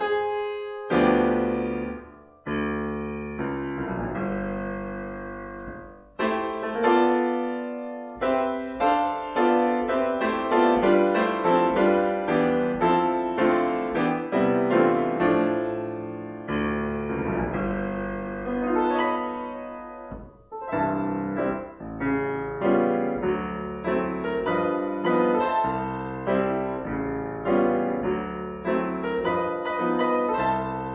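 Solo acoustic grand piano playing a 1930s jazz standard in stride style, with bass notes and chords in the left hand under the melody. The playing runs continuously, with a few short breaks in the flow.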